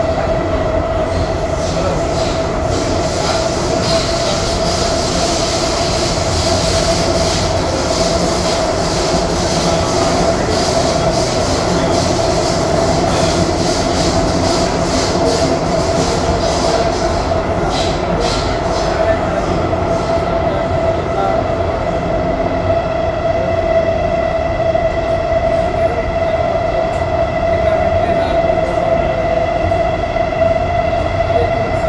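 Interior of an SMRT C751B metro train car running at speed through a tunnel: a steady rumble of the wheels and car with a constant whine underneath. Rapid high-pitched ticking and rattling runs through the first twenty seconds or so, then dies away while the run continues.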